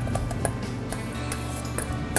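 Background music with a steady low bed, and a few light scattered clicks of a metal spoon against a stainless steel mixing bowl as diced relish is tossed.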